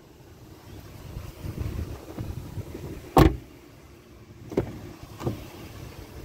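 Power panoramic sunroof motor running for about two seconds and ending in a sharp thunk, followed by two softer knocks.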